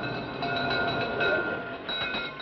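A steady rushing noise with a few held high tones over it: a sound effect under the drama's opening titles.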